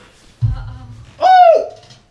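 A deep bass boom from a dance track about half a second in, then a single pitched "ooh" from a voice that rises and falls over about half a second.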